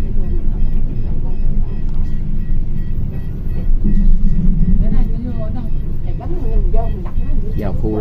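Inside a moving city bus: steady low engine and road rumble, swelling briefly about four seconds in, with passengers' voices faintly in the background.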